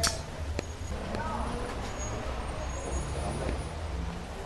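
Faint voices over a steady low rumble, with a sharp click at the very start and a smaller one just after.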